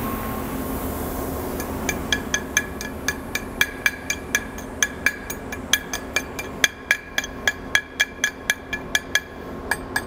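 Chipping hammer knocking slag off a freshly run 7018 stick-weld fill pass on steel pipe. Quick, sharp metallic taps start about two seconds in and go on at about four a second, each with a short ring from the metal.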